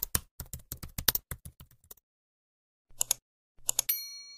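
Computer-keyboard typing sound effect: a quick run of about a dozen keystrokes over two seconds, then a pause. A pair of clicks comes about three seconds in and another short run of clicks near the end, where a bell-like ding starts and rings on.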